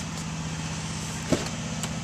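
A vehicle engine idling steadily, a low even hum, with one short click a little past halfway.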